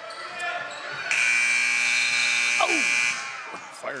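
Gym scoreboard horn sounding the end of the quarter: a loud, steady buzzing tone that starts about a second in and lasts about two seconds.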